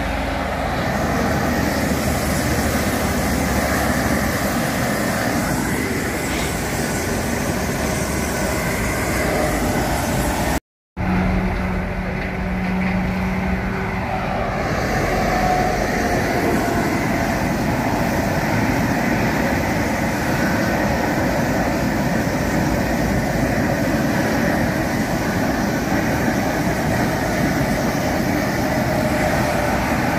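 Steady noise of motorway traffic passing close by, broken off once by a short dropout about ten seconds in.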